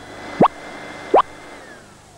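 Two quick rising 'bloop' sound effects about three-quarters of a second apart, over a faint high electronic tone that slides downward near the end.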